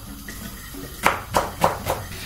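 Knife chopping spring onions on a wooden board: four quick strikes in the second half, about three a second.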